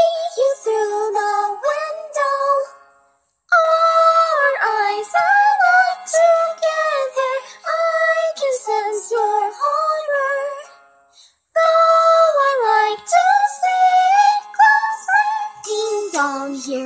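A high-pitched singing voice carries a stepping melody of held notes. It breaks off into silence twice, about three and about eleven seconds in.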